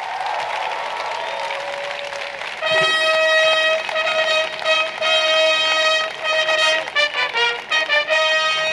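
Applause, then about three seconds in a military brass band comes in with loud held brass notes, breaking into a quicker run of notes near the end.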